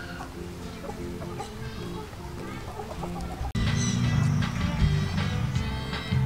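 Background music, with silkie chickens clucking faintly over it in the first half. About three and a half seconds in, the sound cuts abruptly and the music comes back louder.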